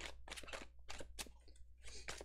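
A deck of tarot cards being shuffled by hand: quick, faint, irregular card flicks and slaps, about five a second.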